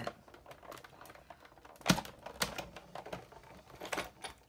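Big Shot die-cutting machine being hand-cranked, pulling a cutting-plate sandwich with a scalloped circle die and cardstock through its rollers: a string of clicks and knocks, the loudest about two seconds in.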